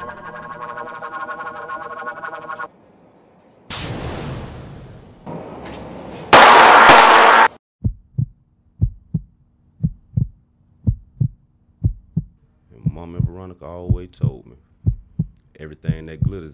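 Gunfire sound effects: a first shot just before the middle, then a much louder, longer blast of shots, after the background music cuts off. A heartbeat sound effect follows as regular low thumps, with a muffled voice over it near the end.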